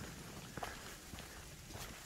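Faint footsteps of a hiker on a dirt trail covered in dry leaves, a few soft steps about half a second apart.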